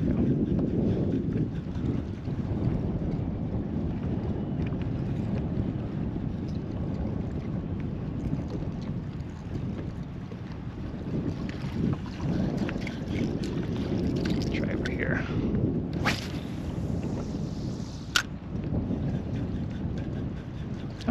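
Steady wind noise buffeting the microphone over choppy open water, with a couple of sharp clicks near the end.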